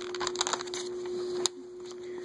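A paper catalog page being turned by hand: a run of crackling paper rustle through the first second, then one sharp click about a second and a half in.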